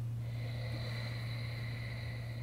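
A long, slow breath drawn through the nose, starting just after the beginning and held steadily for several seconds, over a steady low hum.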